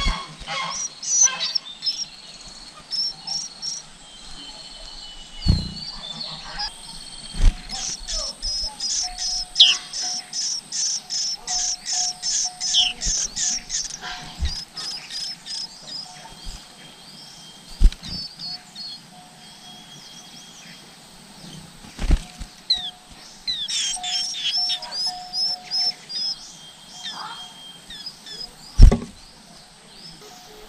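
Nestling white-eyes begging at the nest while the parent feeds them: runs of rapid, high-pitched cheeps, about three a second, loudest in the middle and again near the end. A few dull thumps come between the runs.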